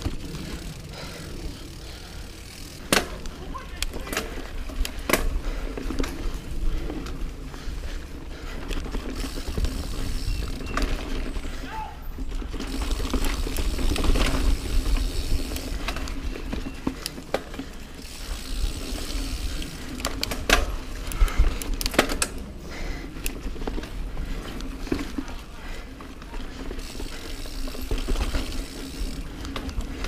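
Niner Jet 9 RDO mountain bike ridden over a dirt and leaf-covered singletrack: tyres rolling on the dirt, with frequent sharp knocks and rattles as the bike goes over roots and bumps, over a constant low wind rumble on the microphone.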